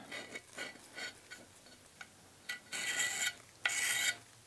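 A small piece of aluminum scraped along the edge of a freshly demolded hydrostone (gypsum cement) cast, shaving off the flashing while the cast is mostly hard but not yet fully cured. Faint scratchy strokes at first, then two louder scrapes in the second half.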